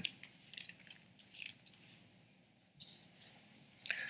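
Faint paper rustling and small scratches of Bible pages being leafed through to find a passage, in short scattered bits, with a slightly louder rustle near the end.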